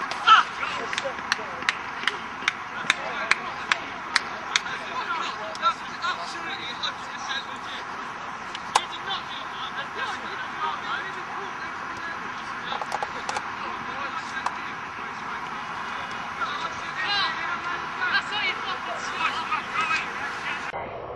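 Voices and shouts of players across an outdoor football pitch. Over the first five or six seconds there is a run of sharp clicks, about three a second, from the handheld camera being carried.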